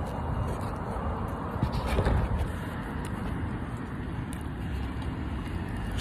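Steady low rumble of road traffic, with a few faint brief knocks.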